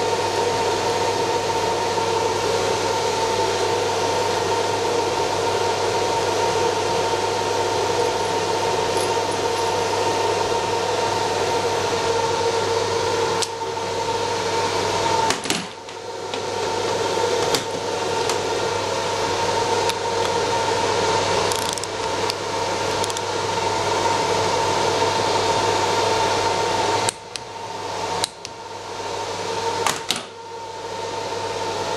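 A steady mechanical drone with a couple of held tones runs throughout, from workshop machinery. Over it come sharp metallic clicks and clinks of hand wrenches working on a steel pump mounting bracket, mostly in the second half. The drone drops out briefly about halfway and twice near the end.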